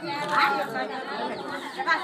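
Several people talking at once: the chatter of a seated gathering.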